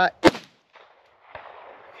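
A single pistol shot about a quarter of a second in: one sharp crack with a short fading tail.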